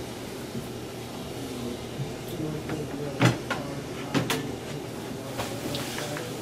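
Several short clunks and knocks as the Valeport RapidSV probe, a metal cylinder, is lowered into a plastic bin of water and bumps against it. The loudest comes about three seconds in, with a pair of knocks about a second later.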